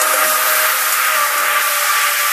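Breakdown of a trance club track: an even wash of hissing synth noise over a few held high synth notes, with no kick drum or bass.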